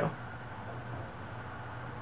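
Steady low background hum and hiss, with no distinct event.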